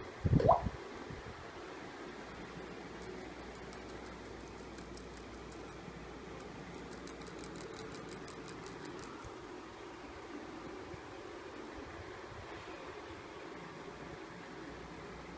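Pet rats moving about in a wire cage: light, quick clicks in the middle over a steady low hiss.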